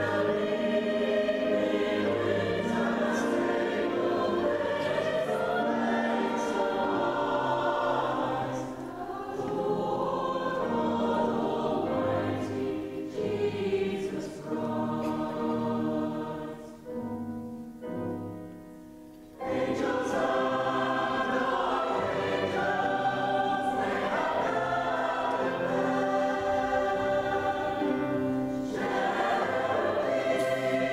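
Mixed choir of men and women singing sustained chords. About two thirds of the way through the singing thins and grows quiet, then the full choir comes back in suddenly and loudly.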